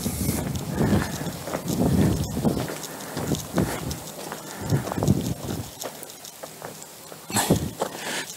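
Footsteps crunching along a bark-chip path at walking pace.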